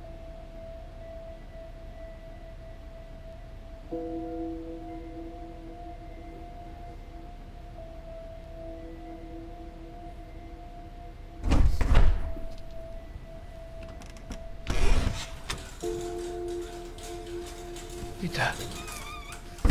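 Soft background music score of long held chords that shift every few seconds. Two loud, short thuds with a deep low end cut in past the middle, the second about three seconds after the first.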